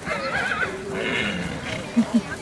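Icelandic horse whinnying: a short, quavering call in the first second.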